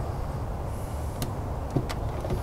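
Steady low outdoor background rumble, with two faint clicks, one just after a second in and one near the end.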